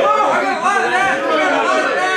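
Men's voices talking over one another, with several voices overlapping and no words coming through clearly.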